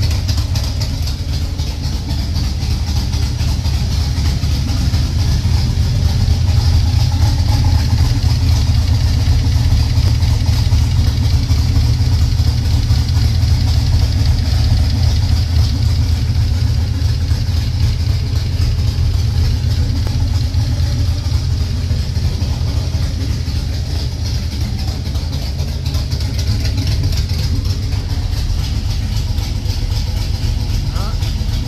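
1996 Camaro Z28's LT1 V8 idling steadily, warmed up to about 171°F coolant and not overheating, heard close to the engine bay. It gets a little louder for a while in the middle.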